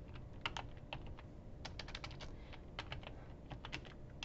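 Typing on a computer keyboard: a fairly faint run of irregular key clicks, several a second.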